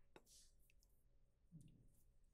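Near silence: room tone with a few faint clicks, the sharpest just after the start.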